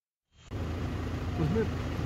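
Steady low rumble of a vehicle, heard from inside its cabin, starting suddenly about half a second in after a moment of silence; a man starts talking over it near the end.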